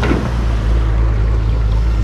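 Shallow stream water rushing over stones, with a steady low engine drone from an excavator working at the weir underneath.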